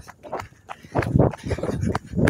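Footsteps on an asphalt path at a walking pace, a dull thud roughly every half second, picked up by a handheld phone.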